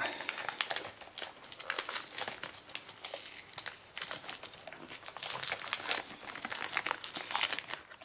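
Crinkly packaging being crumpled and pulled apart by hand: a run of irregular crackling rustles with short pauses between handfuls.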